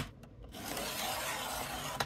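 Blade carriage of a paper trimmer pushed along its rail across cardstock: a sharp click as it is set, then a steady scraping rasp of the blade on the card for about a second and a half.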